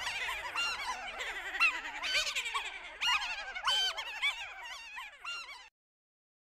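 A crowd of high, cartoonish voices laughing and cackling over one another, the laughs overlapping and echoing, thinning out and then cutting off suddenly near the end.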